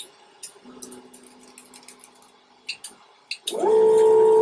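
Sovol SV01 Pro 3D printer's stepper motors auto-homing. A faint steady whine lasts about two seconds, then come a few light clicks. From about three and a half seconds a loud whine rises in pitch, holds, and falls away as the print bed is driven along its axis.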